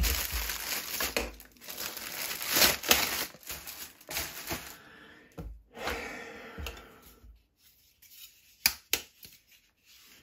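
Thin clear plastic packaging bag torn and crinkled as a plastic toy sai is pulled out of it, a busy rustle for about seven seconds. It then goes quiet, with a few sharp plastic clicks near the end as the toy is picked up off the table.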